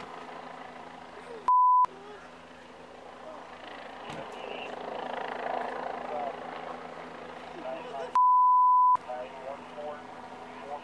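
Two steady censoring bleeps: a short one about one and a half seconds in and a longer one, close to a second, near the end, each blanking out all other sound. Between them, faint voices over outdoor background noise.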